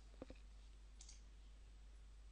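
Two quick computer mouse clicks close together about a quarter second in, then a fainter tick about a second in, over near silence.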